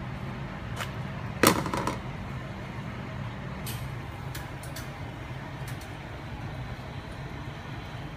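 A frying pan being handled over a gas stove: one loud sharp knock about a second and a half in, then a few lighter clicks, over a steady kitchen hum.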